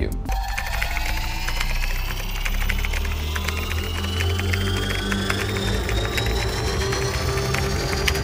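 Fast typing on a computer keyboard, a dense run of key clicks, over background music with a steady low drone and a riser that climbs slowly in pitch.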